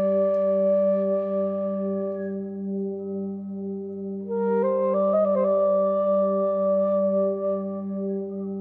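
Transverse flute playing slow, long-held notes over a steady low drone. One held note fades out about two and a half seconds in, and a new phrase begins just past four seconds, climbing in a few quick steps to a long held note.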